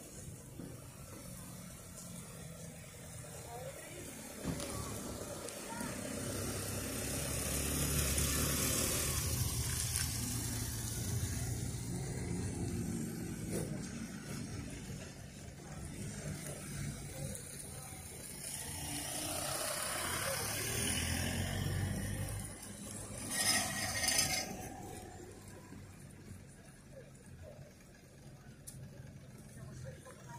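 Street traffic: passing cars, their engine and tyre rumble swelling and fading twice. A brief louder burst of noise comes about two-thirds of the way through.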